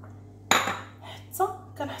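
A single sharp clink of kitchenware against a cooking pan about half a second in, ringing off briefly.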